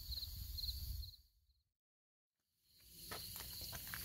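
Faint outdoor ambience with an insect chirping in short, high triple pulses about twice a second. About a second in it fades to dead silence for roughly a second and a half, then faint outdoor noise with a few soft clicks returns.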